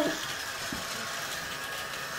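Two Casdon toy Dyson vacuum cleaners, a cordless stick and a Dyson Ball upright, running together with a steady whir from their small motors, one louder than the other.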